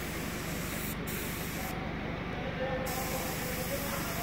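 Compressed-air paint spray gun hissing steadily as it sprays paint onto a metal sheet. Its high hiss drops out briefly about a second in, and again for about a second in the middle.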